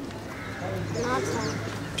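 Quiet, indistinct children's voices murmuring in reply, over a low steady hum.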